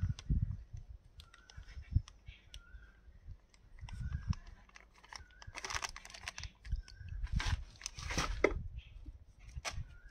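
A thin plastic bag crinkling and rustling, loudest from about halfway through, as it is squeezed and emptied of liquid into a plastic tub, with scattered small clicks. A short chirp repeats about once a second in the background.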